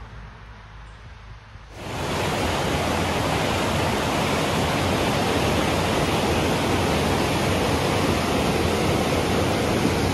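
Quiet background for the first two seconds, then suddenly the steady, loud rush of the River Taw in spate, pouring in white water over rocks and a weir. The water is so powerful that you can hardly hear anything over it.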